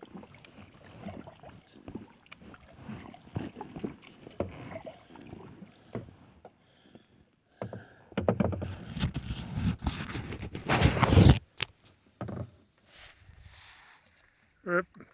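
Kayak paddling on a calm lake: soft paddle splashes and drips with small knocks. From about eight seconds in, a loud rushing noise close on the microphone builds for about three seconds and cuts off suddenly, followed by one short burst.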